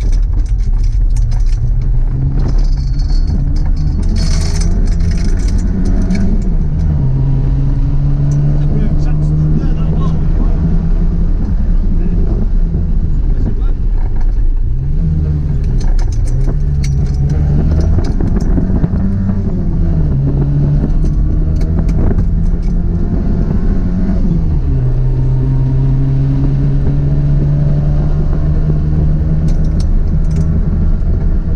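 A 1968 Ford Cortina Mk2 1600 GT rally car's four-cylinder engine, heard from inside the cabin and driven hard on a stage. The engine note climbs and then drops back several times, over steady road rumble.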